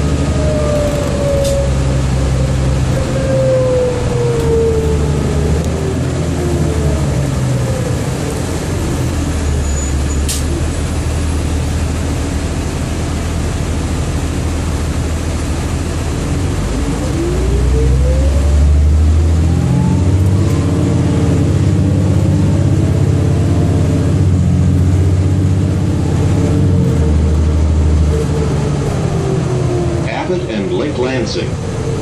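Transit bus engine and drivetrain heard from inside the passenger cabin, a steady low rumble. A whine falls in pitch over the first several seconds as the bus slows, then about halfway through it rises again and the sound grows louder as the bus pulls away.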